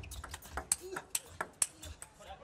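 Table tennis rally: the plastic ball clicking sharply off the rackets and the table, several quick hits each second.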